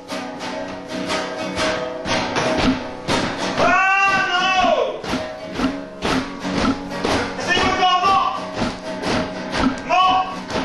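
Acoustic guitar played hard and percussively, with rapid strums and knocks. Over it comes a wordless sung voice that rises and falls, once about four seconds in and again near eight seconds.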